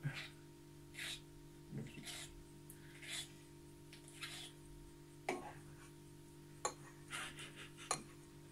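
Eggshell halves clicking against each other and against a drinking glass while an egg is separated by hand, three sharp clicks in the second half. Soft short rustles come between them, over a low steady hum.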